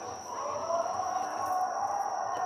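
Football stadium ambience: voices carrying across the ground, their pitch slowly rising and falling, over a steady thin high whine.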